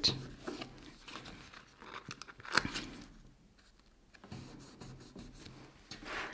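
Faint rustling and scraping of a paper sticker being handled and pressed onto a planner page, with one sharper tick about two and a half seconds in.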